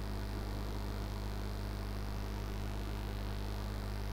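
Steady low electrical mains hum, unchanging throughout.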